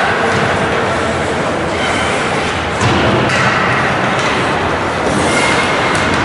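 Ice hockey game in an arena: a steady din of skates on the ice and crowd noise, with a few sharp clacks about three seconds in.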